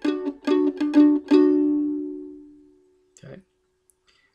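Breedlove mandolin plucking a two-note dyad, 7th fret on the G string with 4th fret on the D string, about six quick picks in the first second and a half. The last pick is left ringing and fades away over about a second and a half.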